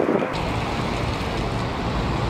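Wind blowing across the microphone: a steady low rumble with hiss above it, without words.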